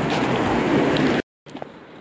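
Loud, even rushing outdoor street noise with no distinct event in it, which stops abruptly a little over a second in. A brief dead silence follows, then a much quieter outdoor background.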